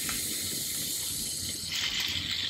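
Aerosol can of hair mousse hissing steadily as foam is sprayed out of the nozzle into a palm.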